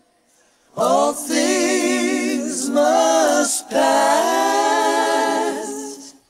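Isolated backing vocal track: voices singing long, held notes in harmony, coming in about a second in, breaking off briefly a little past halfway, then carrying on.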